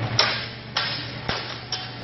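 Clangs of steel longsword blows in an armoured fight: four sharp metallic strikes about half a second apart, the first one loudest, each with a short ring.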